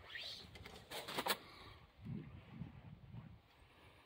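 Faint, low bird calls, a short run of soft notes from about halfway through, preceded by a few sharp clicks about a second in.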